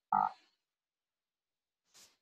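A single brief vocal noise from the man speaking, about a third of a second long, just after the start. It is followed by near silence and a faint click at the end.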